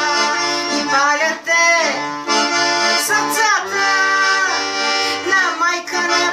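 Piano accordion playing an instrumental passage between sung verses: a sustained right-hand melody over a steady left-hand accompaniment of alternating bass notes and chords.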